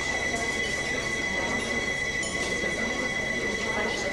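Steady hiss and low hum with a constant high-pitched whine running through it, the background noise of an old VHS recording of a TV broadcast, with no speech.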